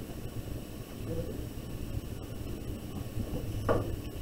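Quiet room tone, a low steady rumble, with a brief vocal sound near the end.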